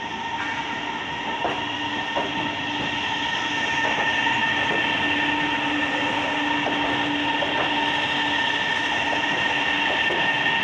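CSR electric multiple-unit train pulling slowly into a station platform: a steady whine of several held tones from its electric drive over the rumble of the wheels, with a few sharp clicks as the wheels cross rail joints. The sound grows louder about three seconds in as the cars draw alongside, and the lowest tone fades out near the end as the train slows.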